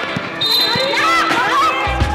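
A basketball being dribbled on a hard court, bouncing every few tenths of a second, with players' voices calling out. Music comes in just before the end.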